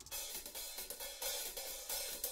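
Soft start of a slow swing-style song: drum-kit hi-hat and cymbal playing light, evenly spaced strokes.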